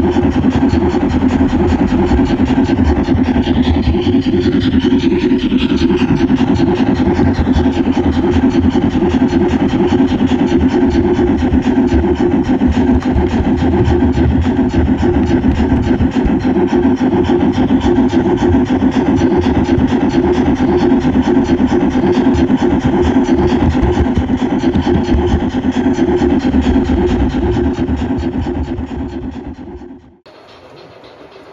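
Steady running noise of an O gauge model steam locomotive heard from a camera riding on its tender: the motor, gears and wheels on the track make a continuous loud hum and rattle, fading out near the end.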